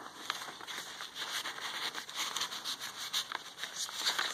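Soft rustling and light crinkling of paper as a loose sheet is folded down and tucked back into a junk journal page, with scattered faint ticks.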